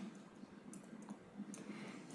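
Faint clicks of a stylus tapping on a tablet screen during handwriting, a few sharp ticks over a low steady hum.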